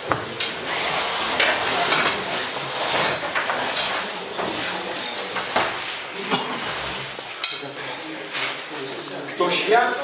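A group of people sitting down at tables: chairs shifting and scraping, with repeated knocks and clinks of crockery and cutlery.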